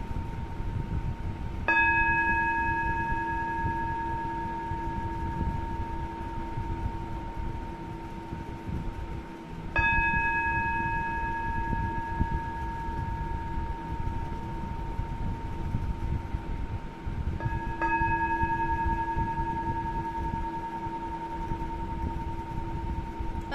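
A singing bowl struck three times, about eight seconds apart, each strike ringing on with a few clear overtones that die away slowly. It is rung to open a silent prayer in a guided meditation.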